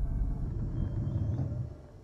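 Low rumble from a horror-trailer sound design, fading away near the end.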